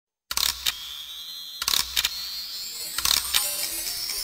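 Title-sequence sound effects: a run of sharp clicks and whooshes, irregularly spaced, over a thin high tone that slowly rises in pitch, starting after a brief silence.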